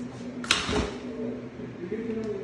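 A single sudden bang about half a second in, followed by a short low rumble.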